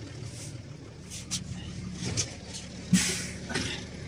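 New Holland T7040 tractor's six-cylinder diesel idling steadily, with a few knocks and rustles as someone climbs into the cab, the loudest a sharp knock about three seconds in.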